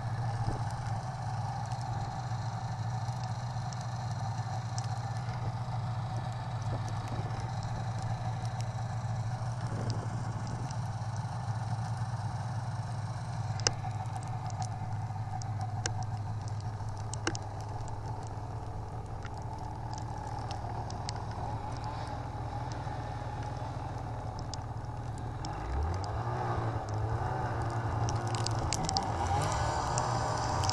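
Snowmobile engine running steadily under way, heard from on board the sled with track and snow noise. A couple of sharp clicks come in the middle, and from about 26 seconds in the engine note rises as the sled speeds up.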